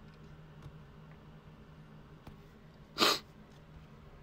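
One short, sharp burst of hissing noise about three seconds in, over a faint steady hum.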